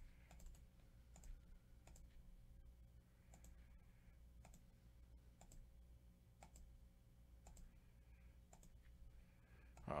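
Faint computer mouse clicks, sharp and spaced irregularly, over a low steady hum.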